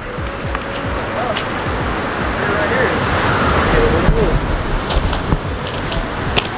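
Steady rush of ocean surf on a rocky shore, with a few sharp clicks like steps on loose stones.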